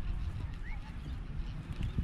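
Footsteps on a sandy path over a low rumble of wind on the microphone, with a few short bird chirps.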